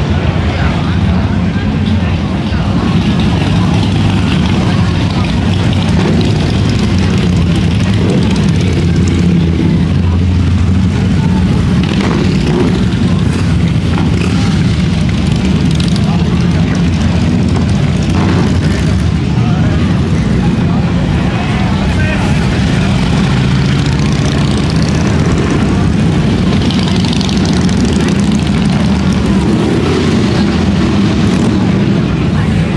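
Harley-Davidson V-twin motorcycles riding past one after another, their engines running loud and steady without a break.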